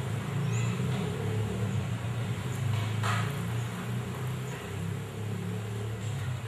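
A low, steady rumble, like a motor vehicle engine running nearby, with a brief hiss about three seconds in.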